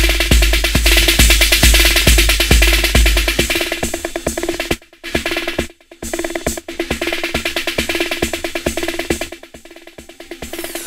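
Electronic dance music from a hard trance/techno DJ mix: a kick drum about twice a second under fast percussion and a steady synth line. The kick drops out about three and a half seconds in, leaving the clicking percussion, with two brief near-silent gaps shortly after.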